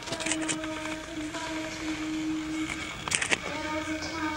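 Grand piano playing a slow introduction, one note held steadily while other notes sound above it, with short clusters of sharp clicks twice, soon after the start and near the end.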